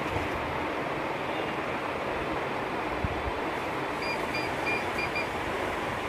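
Steady rushing background noise. About four seconds in comes a quick run of five short, high beeps, roughly three a second.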